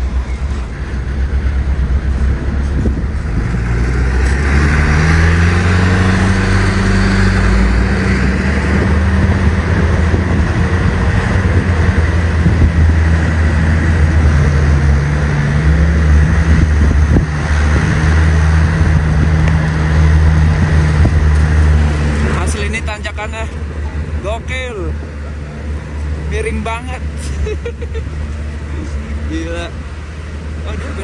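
Isuzu Elf minibus's diesel engine working hard under load, loud, its pitch stepping up and down as it climbs. After about twenty-two seconds the engine sound drops away to quieter road noise with a few short, high, wavering sounds.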